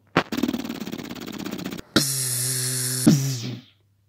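Rapid automatic gunfire sound effect for about a second and a half. After a brief gap comes a steady electronic buzzing zap with a low hum under it, which ends in a second sharp burst and fades out.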